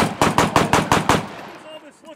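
Rapid gunfire on a shooting range: a fast, even string of shots, about eight a second, that stops a little over a second in.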